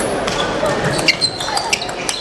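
Table tennis ball clicking against bats and table during a rally: several sharp ticks, the loudest a little past a second in, over steady hall chatter.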